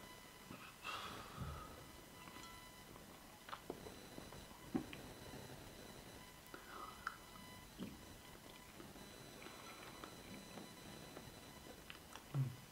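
Faint mouth sounds of someone eating a banana slice topped with chili sauce: a breath about a second in, then scattered quiet smacks and clicks spaced a second or more apart.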